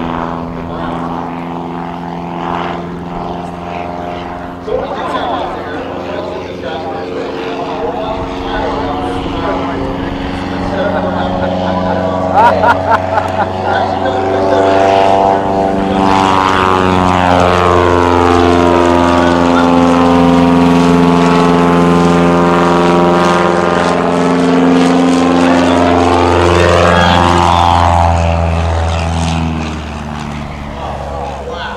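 Piper Super Cub's piston engine and propeller running hard in flight with a steady pitch. The sound swells as the plane passes low, with a sweeping, phasing quality, and falls away again near the end.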